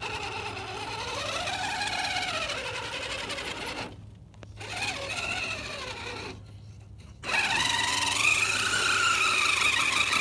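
Redcat Gen8 Axe Edition RC crawler's sensored brushless motor and geared drivetrain whining in three runs as the throttle is worked under load on a steep rock climb, the pitch rising and falling with motor speed. There are short breaks about four and about seven seconds in, and the last run is the loudest.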